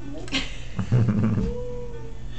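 Short burst of laughter about a second in, followed by a drawn-out whining note near the end.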